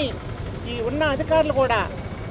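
A woman speaking to reporters over a steady low rumble of street traffic.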